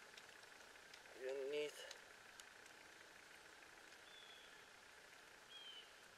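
Near-silent woodland ambience with a few faint, short, high bird chirps. A brief murmured voice comes about a second in.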